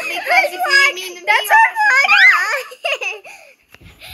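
Children laughing in high voices in a small room, dying away about three and a half seconds in.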